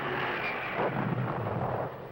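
Rumbling battle noise of artillery fire and explosions, a continuous rolling din that swells to its loudest in the second half and falls away at the end.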